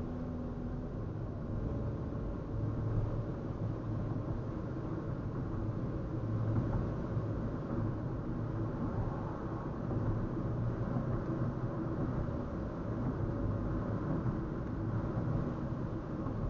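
Steady road and engine noise inside a moving car's cabin, picked up by a dash cam's built-in microphone: a low drone of tyres and engine that rises and falls slightly with no sudden sounds.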